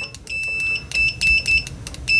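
Continuity beeper of an OWON CM2100B clamp meter sounding as test-lead probe tips are tapped together: a series of high-pitched single-tone beeps of uneven length, about five in two seconds, each starting as the tips make contact. The beeper is loud and latched.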